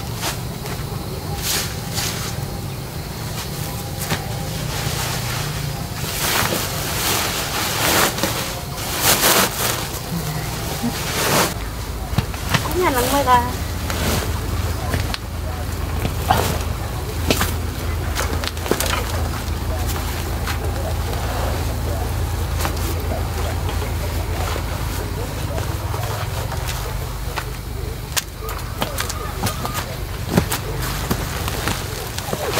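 Woven plastic sacks and fresh tea leaves rustling and crinkling as the sacks are stuffed and hauled, with a run of louder rustles in the middle. A low steady rumble runs under the second half.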